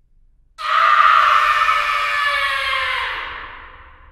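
A long drawn-out scream, used as the sound effect of a horror-channel intro, starting about half a second in, sagging slightly in pitch and fading away.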